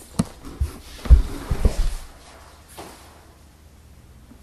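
A leather shoulder bag being handled and lifted onto the shoulder: a few short knocks and rustles, the loudest thump about a second in, then quiet.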